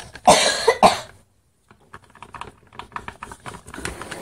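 A child coughing, two loud coughs within the first second, followed by a run of light clicks and taps from hands handling a plastic tub.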